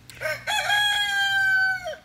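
A rooster crowing once. A short rising opening runs into one long, steady held note that sags slightly and stops sharply, lasting under two seconds.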